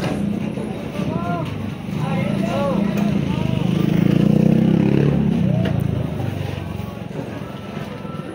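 A motorcycle engine running close by, rising in pitch about four seconds in and easing off by about six seconds, with people's voices around it.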